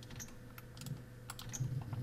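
Computer keyboard keys clicking, about six light taps spaced irregularly, over a low steady hum.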